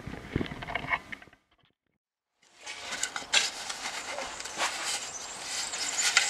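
A few light scuffs and taps of crumbly clay soil being handled by hand, then a cut to about a second of dead silence. After that comes a dense scratchy rattle that grows louder towards the end: powdered charcoal being tipped and shaken from a metal can.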